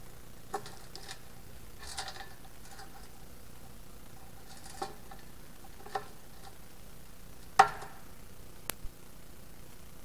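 Brass filler cap on an aluminium oil tank being handled and fitted: a scattered series of small metallic clicks and clinks with a brief ring, the loudest clink about three quarters of the way in and a sharp tick just after it.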